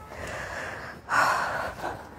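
A woman breathing out hard through a face mask, winded from operating a heavy electric concrete breaker: a softer breath, then a louder one about a second in.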